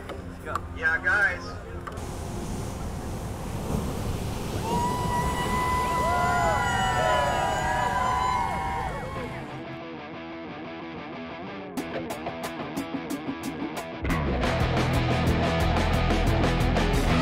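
Steady noise of heavy surf, with a few voices in the first couple of seconds and some gliding tones over it in the middle; then the surf drops away to a quieter stretch with a rhythmic ticking, and a loud rock guitar track comes in about two seconds before the end.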